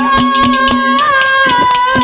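Male singer of Haryanvi ragni folk song holding one long high note into a microphone, its pitch wavering slightly about a second in. Underneath are a sustained harmonium tone and a quick, steady percussion beat.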